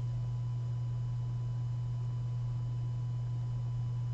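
A steady low electrical hum with a faint thin whine above it, unchanging throughout.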